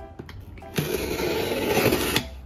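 Box cutter blade slitting the packing tape along the top of a cardboard box: a rasping cut that starts a little under a second in and lasts about a second and a half. Light background music plays under it.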